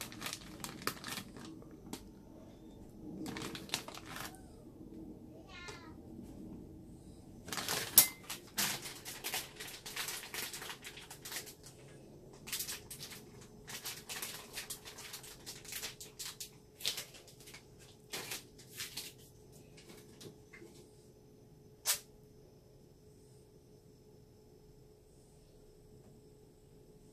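Small plastic packet rustling and crinkling in bursts, with scattered light clicks and taps, as mini marshmallows are handled and dropped onto a glass of chocolate drink. A sharp click stands out about a third of the way through, another near the end, then the handling quietens.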